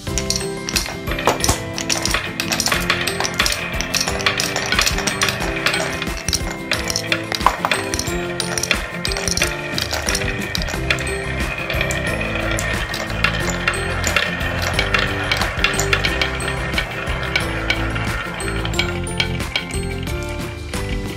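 Many marbles rolling and clacking together down wooden marble-run tracks with wavy grooves, a dense, continuous patter of small clicks and knocks throughout. Background music plays underneath.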